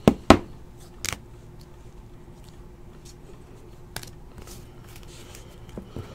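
A few sharp plastic taps as a trading card in a rigid plastic top loader is handled and set down on the table mat, the loudest just after the start and another about a second in, then only faint handling noise.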